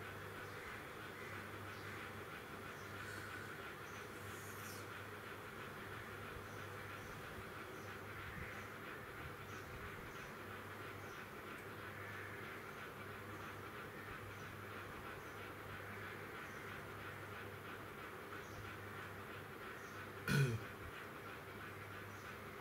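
Faint, steady room background with a low hum. One brief, louder sound comes about 20 seconds in.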